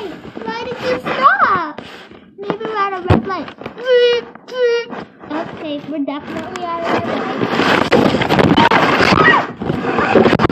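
A child's voice making wordless vocal sounds: short calls that glide up and down in pitch, then a rougher, noisier stretch in the last few seconds.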